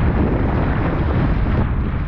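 Strong wind buffeting a surfski-mounted action camera's microphone in a deep, steady rumble, over the rush and splash of breaking waves and spray along the hull.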